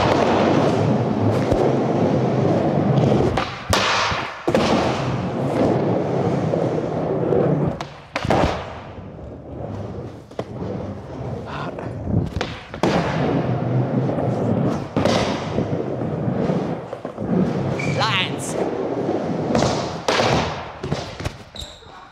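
Skateboard wheels rolling over wooden skatepark ramps, broken by several sharp clacks and thuds of the board popping and landing.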